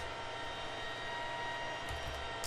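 Steady background hum and hiss, with a soft computer-keyboard keystroke near the end.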